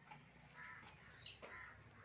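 Faint, short harsh bird calls, repeating about once a second over a near-silent background.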